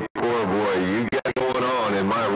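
A voice coming over a CB radio, cutting out suddenly near the start and a few more times just after a second in.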